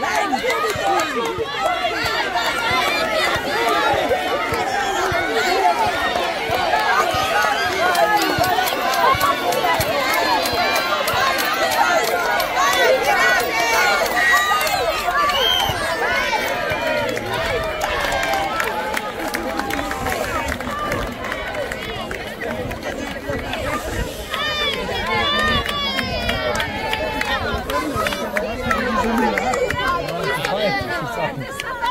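Crowd of children and adults shouting and chattering all at once, many voices overlapping with no single speaker standing out. The noise eases a little about two-thirds of the way through, then rises again.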